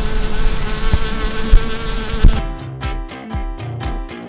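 Cartoon bee buzzing sound effect, a steady buzz broken by a couple of loud low thumps, which stops about two seconds in. Upbeat children's music with a steady beat then starts.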